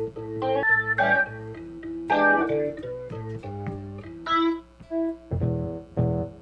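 Electronic stage keyboard on a rock organ voice, playing a slow, gothic-style line of single notes and chords. A fuller, lower chord comes in about five seconds in.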